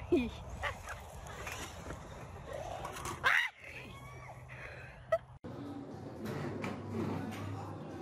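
Voices, with a sudden loud rising cry about three seconds in as a woman falls off a kick scooter. The sound then cuts off sharply and other voices follow.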